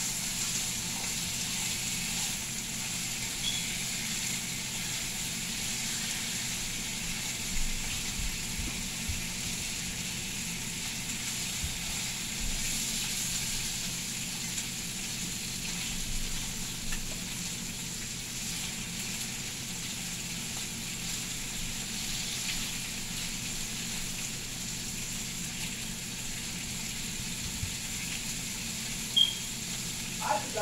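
Bacon strips sizzling in a frying pan: a steady high hiss of frying fat, with a few brief clicks as the strips are moved about in the pan.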